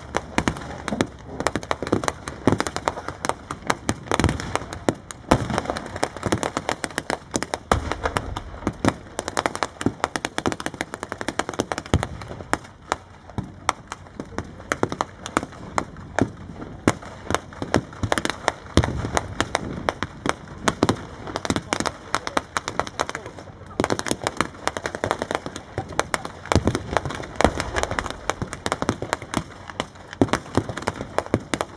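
Dense blank gunfire: rapid machine-gun bursts and crackling rifle shots throughout, with a few deeper booms.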